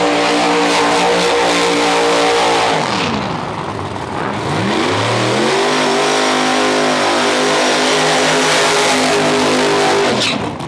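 First-generation Chevrolet Camaro drag car's engine held at high, steady revs. About three seconds in the revs drop away, then climb back up and hold steady again while the tyres spin in a smoky burnout, and the sound drops off sharply at the very end.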